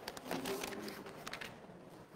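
Faint rustling and light clicks of hymnal pages being turned, with a faint murmur of voices.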